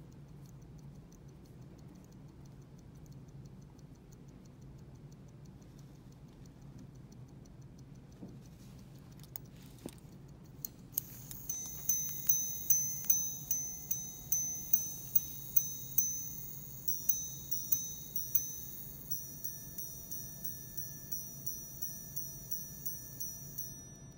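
Audemars Piguet minute repeater tourbillon sounding a full strike on its gongs. After several seconds of faint ticking, the repeater chimes from about halfway in: a run of louder single strikes for the hours, a short passage of two-tone quarter strikes, then a longer series of softer, quicker minute strikes. The strikes follow each other briskly, with little pause between them.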